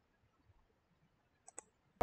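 Near silence broken by two faint computer mouse clicks in quick succession about one and a half seconds in.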